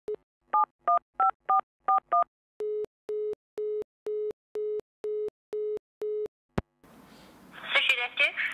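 Telephone keypad tones dialing six digits, then a lower steady-pitched tone beeping eight times, about twice a second. A click follows as the line opens to faint hiss, and a voice begins answering near the end.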